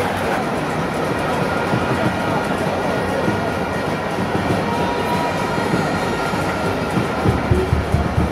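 Steady roar of a large stadium crowd.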